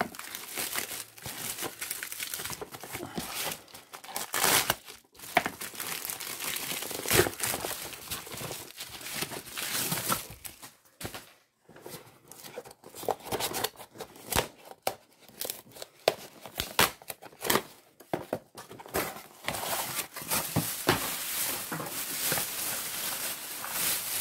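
A padded mailer being cut open and its contents unwrapped by hand. Packaging crinkles and rustles irregularly throughout, with several sharper tearing sounds.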